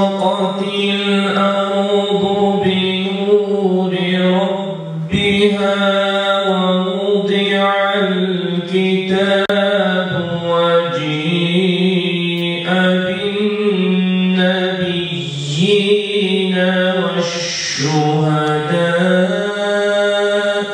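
A man's solo voice chanting a melodic religious recitation into a microphone, in long held, ornamented phrases with short pauses for breath between them.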